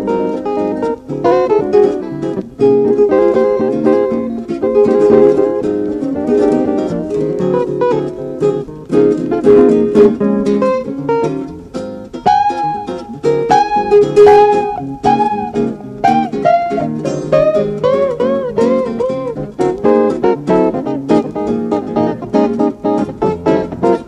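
Instrumental guitar passage of a song: plucked guitar notes over accompaniment, with a run of bent, arching notes in the middle.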